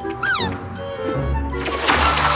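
Cartoon soundtrack music with a short high creature cry that falls in pitch a quarter second in. A rushing noise swells up near the end.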